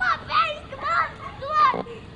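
A young child's high-pitched voice calling out excitedly in about four short bursts, no clear words.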